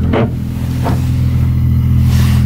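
Nissan 350Z's 3.5-litre V6 with an aftermarket exhaust running, a steady low drone heard from inside the cabin.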